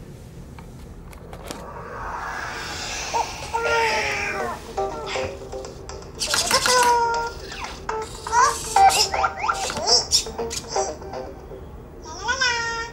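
WL Tech Cubee toy robot powering on: a rising electronic whoosh about two seconds in, then high-pitched synthetic voice sounds and chirps that glide up and down in pitch, with short clicks between them.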